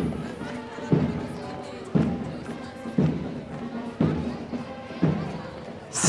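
A drum beating a steady marching pulse, one stroke about every second, each stroke a deep thud that rings and dies away before the next.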